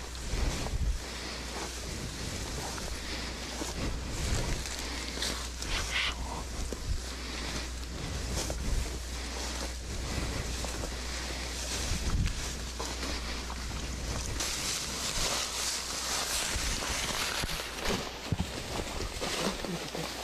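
Wind buffeting a body-worn camera's microphone over the rustle of tall grass and gear as soldiers push through vegetation on foot, with occasional louder brushes and knocks.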